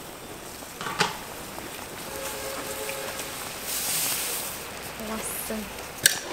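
Steam hissing from an open wok steamer of boiling water, with a single metal clank about a second in and a louder stretch of hissing around the middle. A short exclamation is heard near the end.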